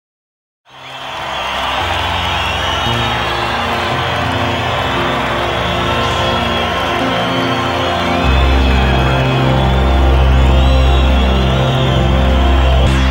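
Slow, dark music of long held low notes that change every second or so; a deeper, louder bass note comes in about eight seconds in. Above it there is a haze of crowd noise with thin, gliding whistles.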